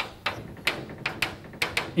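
Chalk tapping and scraping on a blackboard in about six short, sharp strokes, as small tick marks are drawn on a figure.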